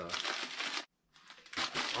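Brown packing paper crinkling and rustling as a small part is unwrapped, broken by a moment of dead silence a little under a second in, then more crinkling.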